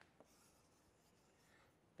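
Near silence: faint room tone, with one faint short click shortly after the start.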